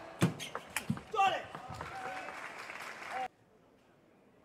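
Table tennis rally: the ball clicks quickly off the bats and table, about four hits a second, until the point ends about a second in. A loud shout follows, then crowd cheering and applause that cuts off suddenly a little after three seconds.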